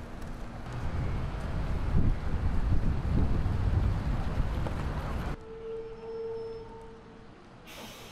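Low outdoor street rumble that cuts off suddenly about five seconds in, leaving a much quieter background with a faint steady hum.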